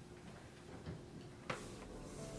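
Faint scattered ticks and taps from a cloth wiping and a hand handling a plastic air purifier, with one sharp click about one and a half seconds in.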